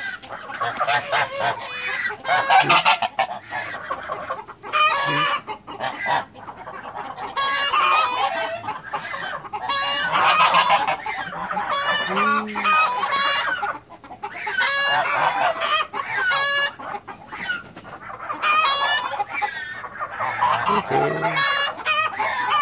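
A flock of domestic geese honking and calling over and over, many calls overlapping, some short and some drawn out.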